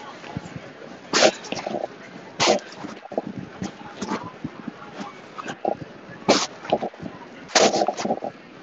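Garbled, broken-up live-stream audio: short sharp bursts of distorted sound about once a second, several with a brief flat buzz, over a low background, the sign of a failing audio connection.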